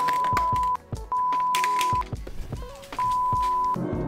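Three loud, steady censor bleeps at one pitch, each under a second long, cutting in and out over background music.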